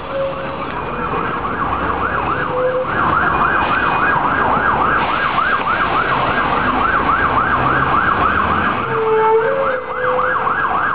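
Emergency vehicle siren in a fast yelp, its pitch rising and falling about three to four times a second, growing louder about three seconds in, over the steady noise of street traffic.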